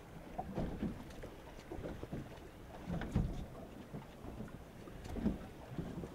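Wind and water moving against the hull of a small fishing boat on open water, with brief low murmurs of voices about three and five seconds in.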